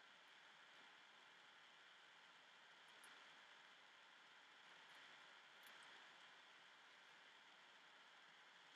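Near silence: a faint steady hiss of room tone, with a couple of very faint ticks.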